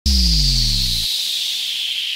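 Electronic sound-design intro to a music track: a deep bass tone that cuts off about a second in, under a hissing whoosh that slowly falls in pitch.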